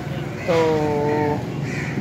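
A man's voice drawing out a single syllable, "to", for about a second, over low outdoor background noise.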